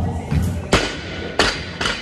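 A barbell loaded with Eleiko rubber bumper plates dropped from overhead onto a lifting platform: one loud impact under a second in, then two smaller bounce impacts.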